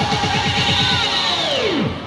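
Electronic dance music with a fast run of repeated falling bass hits; near the end the whole track slides steeply down in pitch and drops away, like a record slowing to a stop at a break in the mix.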